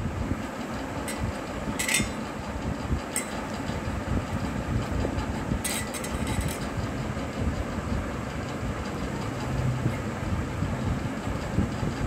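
Steady low rumbling background noise, with a few short handling clicks about two and three seconds in and again around six seconds.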